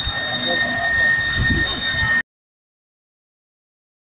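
A steady, high-pitched alarm tone sounds over a crowd's voices and a low rumble, then cuts off suddenly about two seconds in.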